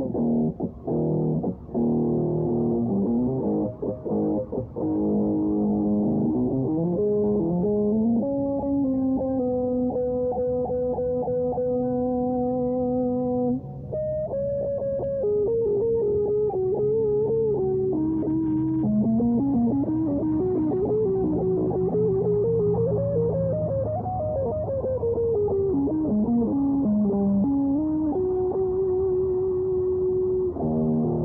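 Electric guitar playing: short, choppy chords for the first several seconds, then long held notes, then a flowing lead melody with sliding, bent notes.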